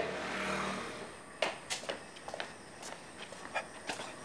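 Footsteps: a run of faint, irregular taps of shoes on a concrete floor as someone walks away.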